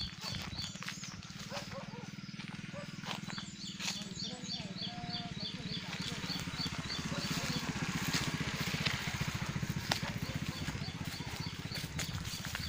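An animal's short, high chirps repeating about three times a second, pausing now and then, over a steady low hum.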